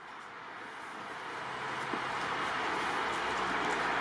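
Steady, even background noise with no distinct events, fading in and growing gradually louder.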